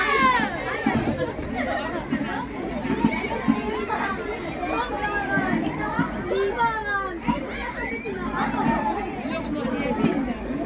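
A crowd of spectators talking and calling out over one another, with many high children's voices shouting and chattering.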